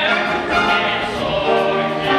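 Two male voices singing a Broadway show tune together over instrumental accompaniment, with long held notes.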